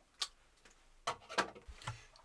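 A few light clicks and knocks of a Cuisinart food processor being handled and set up: one click near the start, two more about a second in, and a dull knock near the end. The motor is not yet running.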